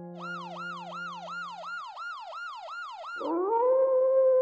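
Sound effects: a siren-like sound repeats fast, falling swoops, about three or four a second. A little after three seconds it stops and a howl rises and settles on a long steady note.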